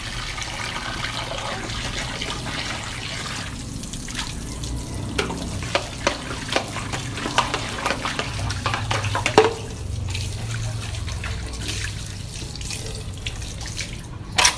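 Tap water running into a sink while plates are washed by hand, with scattered light clinks and knocks of the plates.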